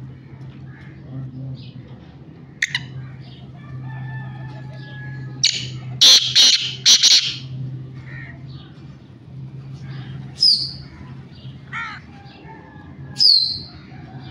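Caged black francolin calling: a loud, harsh burst of calls about six seconds in, then several short high calls that slide downward later on, over a steady low hum.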